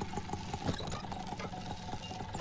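A quick, irregular run of small clicks and knocks over a faint low steady hum.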